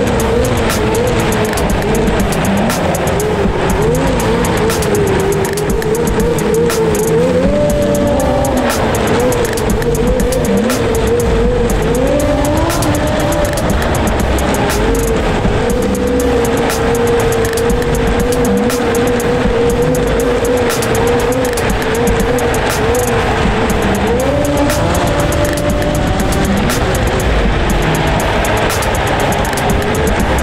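Snowmobile engine running at a steady high pitch in a road tunnel, its note rising briefly three times. Background music with a beat plays over it.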